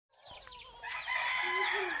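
Aseel game rooster crowing: one long crow beginning just under a second in.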